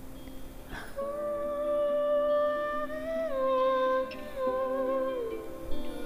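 A woman humming a wordless melody of long held notes over a backing beat; the notes start about a second in and step down in pitch twice.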